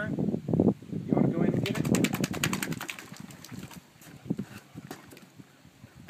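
People's voices, with a quick rattling run of sharp clicks, about ten a second, lasting roughly a second from a little under two seconds in.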